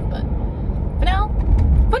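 Steady low rumble of a car's engine and tyres heard from inside the cabin while driving, growing louder about a second and a half in.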